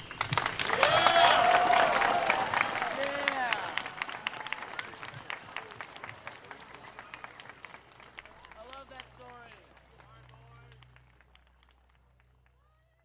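Audience applauding and cheering, with shouted whoops over the clapping. It is loudest in the first few seconds, then dies away gradually, with a few more whoops near the end.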